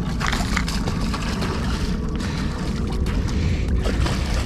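A small gar splashing and thrashing at the water's surface by the shoreline rocks as it is reeled in on a fishing line, over a steady low rumble.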